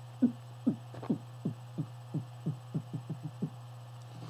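Closed-mouth beatbox techno bass kick: a string of short throat pulses, each dropping in pitch, about three a second and quickening near the end. The sound is made by cutting off an 'ng' in the throat without opening the lips.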